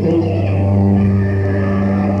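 Live rock band holding a sustained low note, with its overtones steady throughout, on a rough, distorted audience recording.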